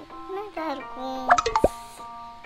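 Background music with steady notes, a brief voice in the first half, and a loud plop-like sound effect about one and a half seconds in: a quick cluster of sharp pops ending in a fast falling sweep.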